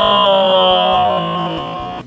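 Dramatic music sting: a held synthesizer chord whose tones slowly sink in pitch, then cut off abruptly at the end.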